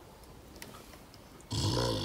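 A dog's grumbling vocal noise, once, about half a second long, near the end. It comes from a dog wanting the cake it has just been refused.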